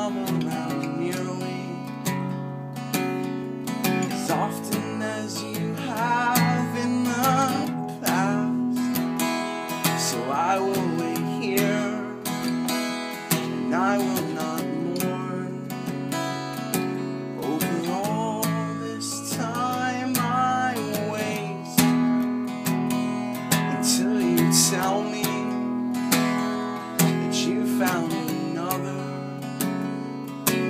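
Acoustic guitar strummed steadily in chords, with a man's voice singing over it in phrases.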